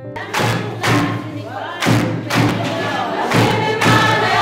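Drums struck in a steady beat about twice a second, with a group of voices singing or chanting over it.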